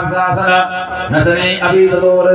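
A Hindu priest chanting Sanskrit mantras into a handheld microphone in a continuous, even recitation.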